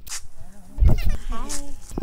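A woman laughing, her voice wavering up and down in pitch in short bursts.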